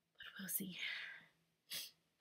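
A woman speaking softly in a breathy, half-whispered voice, then a short sharp breath in about three-quarters of the way through.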